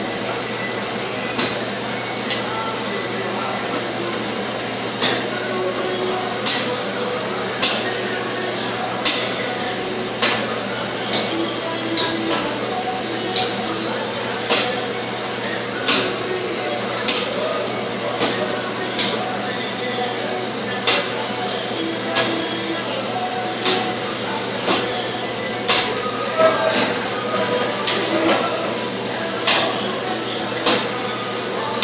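Sharp metallic clinks repeating at a steady pace of roughly one every second, over a faint background murmur of voices.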